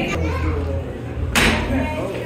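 Children's voices and talking, with one brief loud noisy burst about one and a half seconds in.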